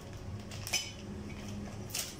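A plastic-wrapped steel motorcycle exhaust header pipe is handled, giving two short light metallic clinks, one under a second in and one near the end, with a rustle of its plastic wrapping.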